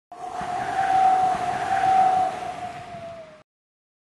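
Whooshing outro sound effect with a steady whistle-like tone. It swells and then fades, the tone dipping slightly in pitch before it cuts off about three and a half seconds in.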